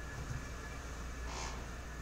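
Steady low hum and room noise from a small room, with one brief soft rustle about one and a half seconds in.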